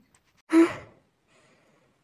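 A single short, breathy "hah" from a person's voice, like a sigh, about half a second in.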